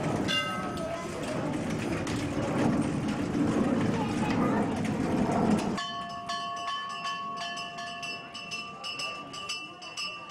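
Dense rumbling background noise that cuts off abruptly about six seconds in, giving way to steady, bell-like ringing tones with light clicking.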